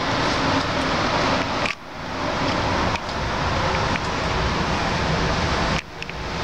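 Steady rushing background noise of an indoor shooting range, with no gunshots. It dips briefly twice, about two seconds in and near the end.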